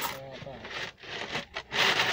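Coins rattling and scraping inside an orange plastic piggy bank as it is shaken and tipped to empty it.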